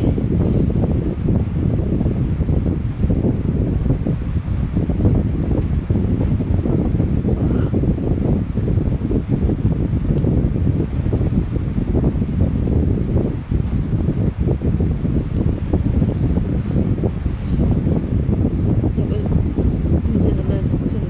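Steady low rumble of wind noise buffeting the microphone, fluttering unevenly throughout.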